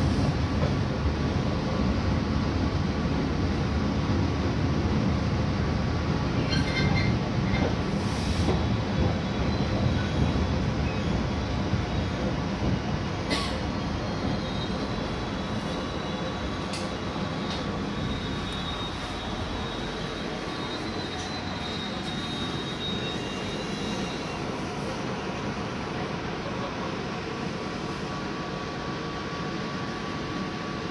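Joglosemarkerto passenger train heard from inside the carriage: the rumble of wheels on rail grows quieter through the middle as the train slows into the station. There are a few sharp clicks over rail joints, and a thin high squeal from the wheels or brakes lasts about ten seconds.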